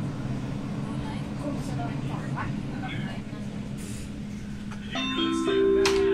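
Train running with a steady rumble and hum, heard from inside the carriage. About five seconds in, the onboard announcement chime sounds: three held tones stepping upward, the signal that a passenger announcement is coming.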